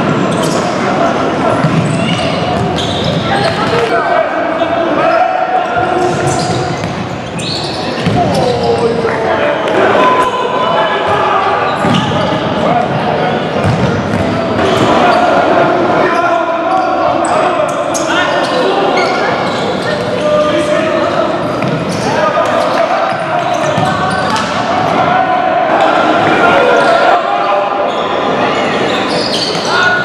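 Indistinct shouts and calls from players, with the futsal ball being kicked and bouncing on the wooden floor, echoing in a large sports hall.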